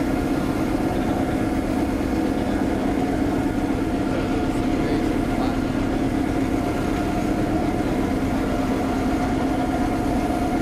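Driverless street sweeper running with its sweeping gear working: a steady mechanical hum with several constant tones that does not change.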